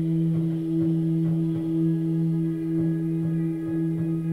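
Background meditation music: a steady sustained drone holding two low tones with soft overtones, like a singing bowl.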